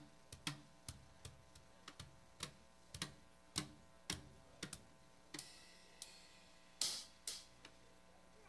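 Drum kit struck irregularly by a small child: single hits on the drums and cymbals, about two a second, some with a low thud and some with a lingering cymbal wash. A cymbal crash about seven seconds in is the loudest.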